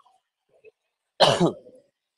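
A single cough about a second in: one sharp burst trailing off into a short falling voiced sound.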